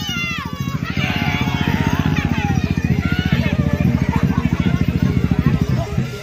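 A motorcycle engine running close by with a rapid, even low pulse, under shouting voices.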